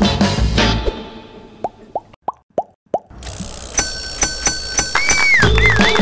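Background music fades out, then five quick rising 'plop' pop sound effects sound in a brief lull. The music comes back with chiming tones and a wavering whistle-like tone near the end.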